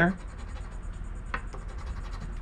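A coin scraping the coating off a scratch-off lottery ticket: steady dry scratching, with one sharp click about a second and a half in.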